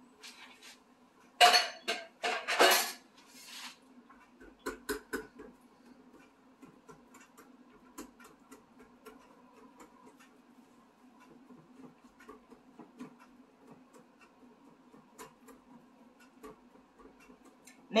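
A metal sardine tin knocked and scraped with a wire whisk over a glass mixing bowl to empty it, a few loud clattering strikes a second or two in. After that come faint, sparse clinks of the wire whisk stirring lentil batter against the glass bowl.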